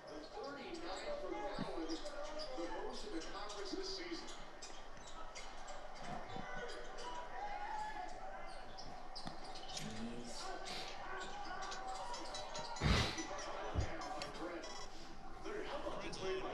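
Indistinct voices and game sound from a televised basketball broadcast. Two loud thumps come about thirteen seconds in, less than a second apart.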